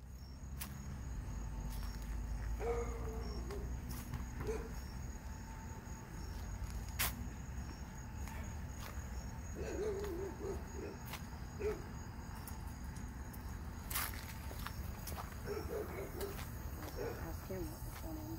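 Night-time outdoor ambience of crickets trilling steadily over a low rumble, with faint distant voices now and then. Two sharp clicks come about seven and fourteen seconds in.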